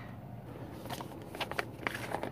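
Plastic twist-off lid of a gummy jar being turned open by hand: faint scraping and rustling with a few light clicks, mostly in the second second.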